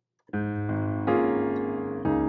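Piano playing sustained chords in D-flat major: after a brief silence, three chords are struck in quick succession within the first second and held, ringing on.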